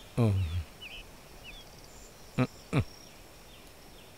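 Quiet outdoor ambience with a few faint bird chirps in the first couple of seconds. It is broken by a short falling vocal exclamation at the start and two brief vocal grunts a little past halfway.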